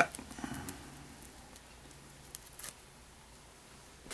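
Faint rustling and a few light ticks of fingers stripping marabou fibres off a feather's stem, with a small cluster of ticks about two and a half seconds in.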